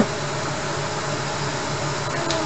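Ground chicken sizzling steadily in a frying pan as it is stir-fried, with a low pulsing hum underneath.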